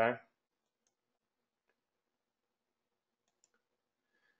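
Near silence after a single spoken word, with a few very faint, scattered clicks.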